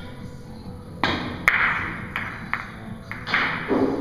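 Break shot in Russian pyramid billiards: a sharp knock of the cue on the cue ball about a second in, then the loudest crack as the cue ball smashes into the racked pyramid, followed by several more hard clacks of the heavy balls hitting each other and the cushions.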